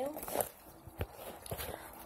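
Handling noise from a purse and its contents: soft rustling with a few light clicks and knocks, the sharpest about a second in.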